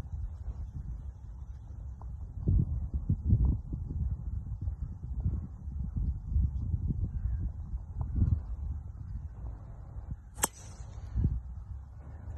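Wind buffeting the microphone in uneven gusts, then a single sharp crack about ten seconds in: a driver striking a golf ball off the tee.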